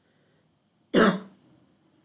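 A man coughs once, short and sharp, about a second in, clearing his throat.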